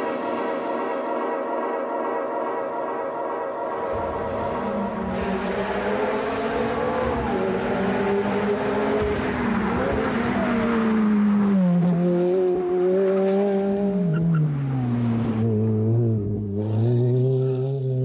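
Ferrari F430 V8 engine driven hard. Its pitch is fairly steady for the first few seconds, then climbs and drops several times as the revs rise and fall through the gears.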